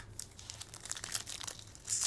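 Foil wrapper of a trading-card pack crinkling as it is handled and torn open by hand, with the crackle growing louder near the end.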